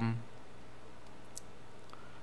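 Steady low background hiss, with the end of a drawn-out spoken 'um' at the very start and a single faint click about a second in.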